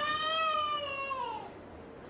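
A young child's voice: one long, high-pitched wail that rises a little and then falls, fading after about a second and a half.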